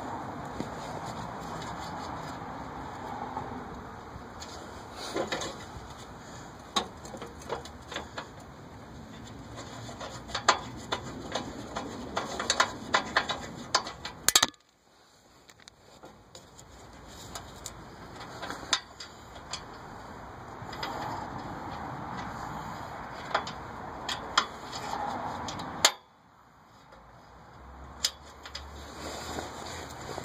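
Scattered metallic clicks and clinks of hand work on a steel mower frame, bolts and tools being handled and fitted, over a steady background hiss. The clinks come thickest in quick clusters just before the middle, and the background drops out abruptly twice.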